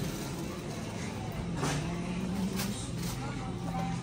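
Supermarket background sound: a steady low hum with indistinct voices and a few short clatters in the second half.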